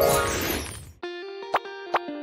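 Editing transition sound effect: a whoosh that fades over about a second, followed by a short musical sting of held tones with two sharp notes near the end.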